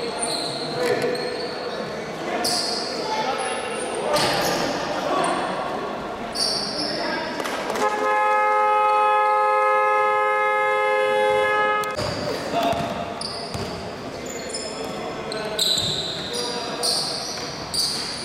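A basketball game horn sounds one steady electronic tone for about four seconds near the middle, echoing in a large gym. Around it, a basketball bounces on a hardwood court and sneakers squeak.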